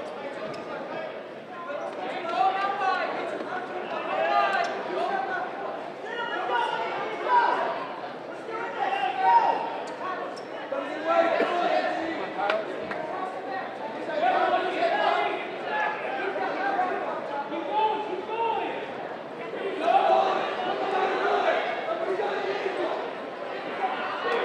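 Men's voices calling out and shouting in short bursts every second or two in a reverberant gym, the sound of coaches and spectators urging on wrestlers.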